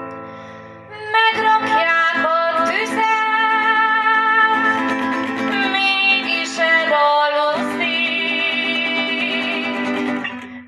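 Hungarian folk tune played on a plucked string instrument, with sustained melodic notes and a short break about seven seconds in.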